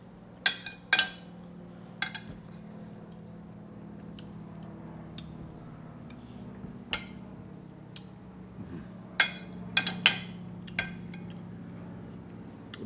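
Metal cutlery clinking against a plate as food is cut and eaten: about eight sharp, short clinks, a pair near the start and a cluster about nine to eleven seconds in, over a low steady hum.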